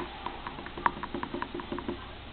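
A click, then a run of light, quick, irregular ticks as powder is shaken out of a green plastic container into an open plastic baby bottle of water.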